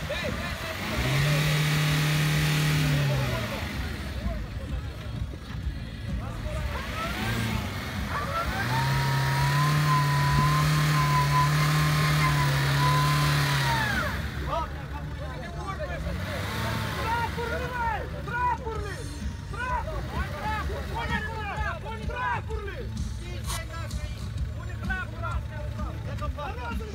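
Suzuki Jimny's petrol engine revved hard and held at high revs twice, briefly and then for about five seconds, as the 4x4 strains stuck in deep mud. Crowd voices fill the pauses and the second half.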